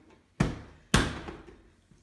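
Two knocks, the second louder, as a plastic blender jar and its lid are pushed down and seated in place on the blender.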